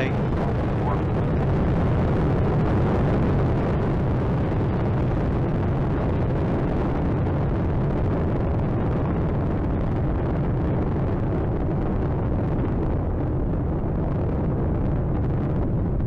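Space Shuttle ascent: its solid rocket boosters and main engines make a steady, deep roar.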